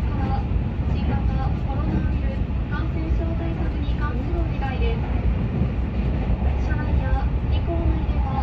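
Keihan Railway limited express train running at speed, a steady low rumble of wheels on rails heard from inside the passenger car. Faint voices run underneath.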